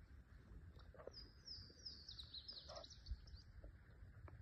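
A songbird singing faintly from the shore woods: one song of quick, high notes, each sliding downward, lasting about two seconds from a second in.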